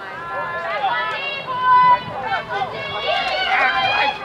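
People's voices calling and shouting across a soccer field during play, with no clear words; several voices overlap near the end.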